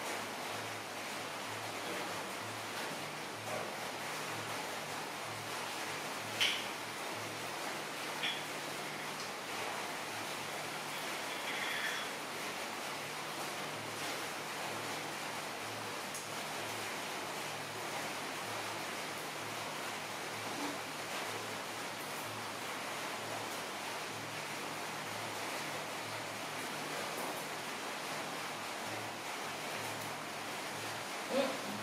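Steady background hiss with a faint low hum, broken by a few brief faint clicks, about six, eight and twelve seconds in.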